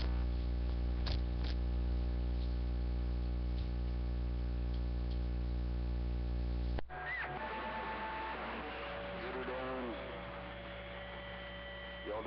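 Heavy mains hum with many overtones on the CB radio station's audio, the hum he is trying to get rid of. It cuts off suddenly about seven seconds in. Then comes hiss with steady whistling carrier tones and garbled sideband voices.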